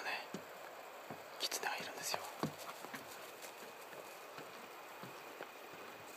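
A person whispering a few hushed words at the start and again from about one and a half to two seconds in, with scattered soft clicks and taps around them. A faint steady high tone comes in near the end.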